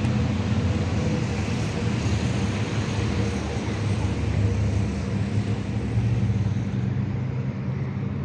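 Steady low rumble of urban outdoor background noise, traffic-like, continuous with no distinct events.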